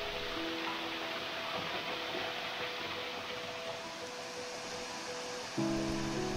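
Soft background music with long held notes, a deeper low chord coming in near the end, over a steady rush of running water.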